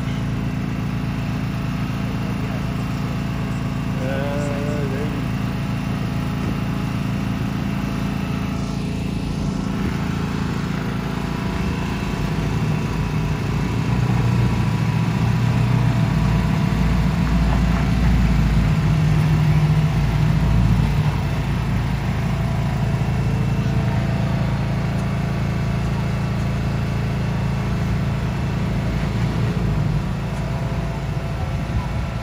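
Heavy pickup truck's engine running steadily while towing a loaded gooseneck trailer. It grows louder and lower-pitched for several seconds midway, as the engine works harder pulling the load uphill.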